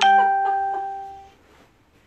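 A single bright electronic chime that starts suddenly and rings out, fading away over about a second and a half.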